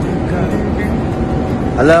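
Steady drone of an airliner cabin in flight, with a voice starting near the end.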